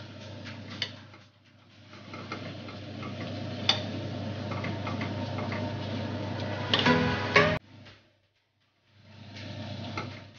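Tomato slices frying in oil in a pan: a steady sizzle, with a metal spoon and spatula clicking and scraping against the pan as they are turned. A brief squeak comes about seven seconds in, then the sound cuts off suddenly and comes back about a second later.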